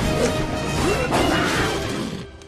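Loud, dramatic orchestral film score mixed with crashing and thrashing impacts from an animated fight scene.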